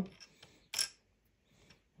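A small 3D-printed plastic game figure scraping briefly as it is set down on the board, with a faint tick just before it.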